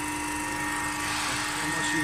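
Tube reducing machine running, giving a steady hum with a constant high whine over it.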